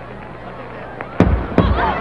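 Space Shuttle Discovery's double sonic boom: two sharp booms about 0.4 s apart, a little over a second in, over a chattering crowd.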